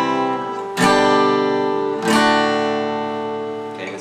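Acoustic guitar chords strummed and left to ring. One is already sounding, another is struck about a second in and a third about two seconds in, each slowly dying away. The chords make a walk-down in the bass, with a G chord that has B in the bass.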